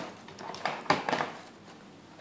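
Light clicks and rattles of a plastic filament spool being handled and seated on a 3D printer's spool holder, a few in the first second or so with the loudest about a second in.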